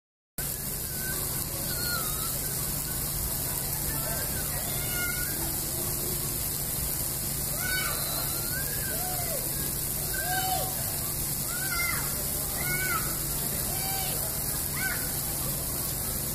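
Steady hiss of water jets spraying from splash-pad nozzles, with short, high, rising-and-falling calls of young children over it.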